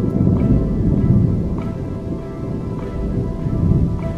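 Background music with sustained notes over a low rolling rumble of thunder and steady rain, the rumble swelling about a second in and again near the end.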